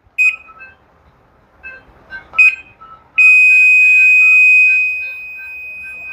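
A washing machine's control-board buzzer. It gives a short beep just after power-on and another about two seconds in, then from about three seconds in a long, unbroken high beep that turns quieter near the end: the alarm for the F8 error, a fault in sensing the water level.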